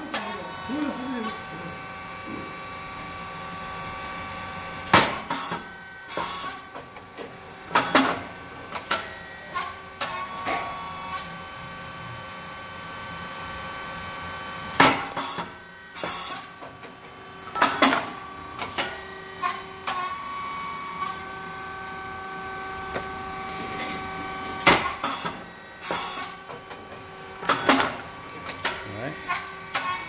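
SYP9002 rice cake popping machine running its automatic cycle, about one cycle every ten seconds. Each cycle gives a loud sharp burst followed about three seconds later by a second burst, over a steady machine hum with several held tones.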